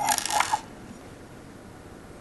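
Brief clinking and rattling of small metal connector housing parts being picked up and handled, lasting about half a second, then quiet room tone.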